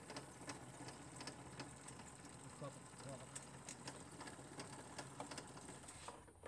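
A faint steady low hum of the weeding platform's motor, with scattered small clicks and ticks.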